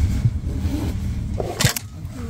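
Clothing and bags rustling as a jacket comes off and luggage is shifted in a train carriage, over a low steady rumble. A short, sharp knock of handling noise comes about one and a half seconds in as the camera is jostled.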